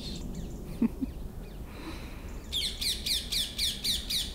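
A songbird singing a fast run of short, high, downward-sliding notes, about six a second, starting about two and a half seconds in.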